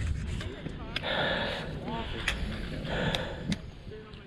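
Outdoor ambience on a ski slope: faint background voices, several short hissing scrapes of skis on snow, and a few sharp clicks.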